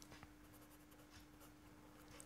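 Faint scratching of a marker pen writing on paper, over a faint steady hum.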